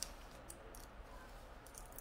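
Faint paper rustling and a few light clicks as hands smooth sublimation transfer paper and its tape onto a woven doormat, over a low steady hum.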